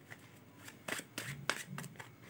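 A deck of tarot cards shuffled by hand: an irregular run of short card flicks and slaps, sparse at first and coming thick and fast in the second half.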